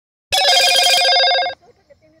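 A loud, steady ringing tone with a fast trill, lasting about a second and a quarter, that starts and stops abruptly.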